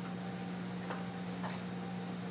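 Steady low hum of a lecture hall's room tone, with two faint short clicks about half a second apart near the middle.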